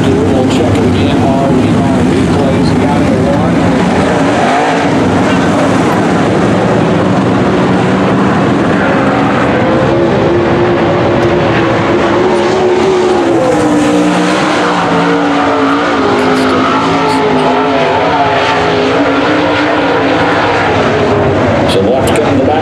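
A pack of dirt late model race cars' V8 engines racing at speed round a dirt oval, the engine note rising and falling as the cars pass through the turns and down the straights.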